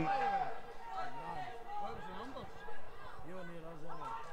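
Faint men's voices: short calls and chatter, as from players shouting to each other on a football pitch during play.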